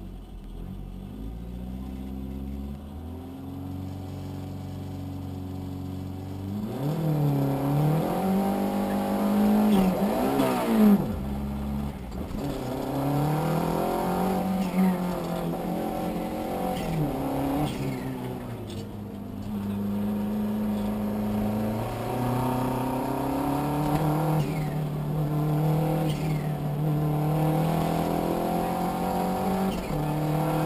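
Renault Super 5 GT Turbo's turbocharged four-cylinder engine heard from inside the cabin, running steadily at low revs, then from about seven seconds in revving hard through the gears, its pitch climbing and dropping with each shift and lift.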